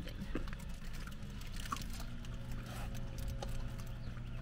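Faint crinkles and clicks of a burger's paper wrapper being handled, over a steady low hum inside a car cabin.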